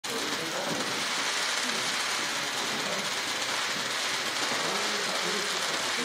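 Press photographers' camera shutters clicking in rapid, overlapping bursts, a dense steady clatter, with faint indistinct voices under it.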